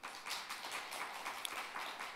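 Applause: a dense patter of many hands clapping, fairly even in level.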